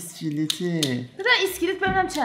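People talking, with a few short sharp clicks about half a second in.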